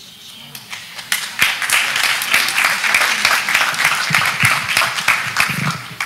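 Audience applauding: many hands clapping at once. It builds up over the first second or so, holds steady and thins out near the end.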